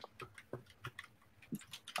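Faint, irregular clicking of computer keyboard keys being typed on.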